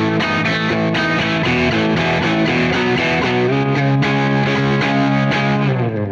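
Harmony Jupiter Thinline hollow-body electric guitar with gold foil pickups, tuned to open E, playing ringing chords. The chord moves lower about halfway through, and the playing stops just before the end.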